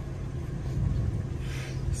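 Steady low hum of a car engine running at idle, under a low outdoor rumble; a faint hiss swells near the end.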